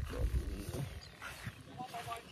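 Faint talking between people over a low rumble that is strongest in the first half second.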